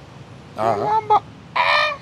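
Chicken squawking as it is held in someone's hands, two short calls, the second higher and shriller.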